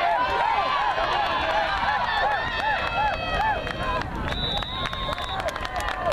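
Spectators at a youth football game shouting and cheering as a ball carrier breaks into the open, with repeated excited yells. A little past four seconds in, a steady high referee's whistle sounds for about a second, blowing the play dead.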